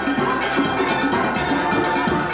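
Steel band playing: steelpans striking quick runs of ringing pitched notes, with drums keeping time underneath.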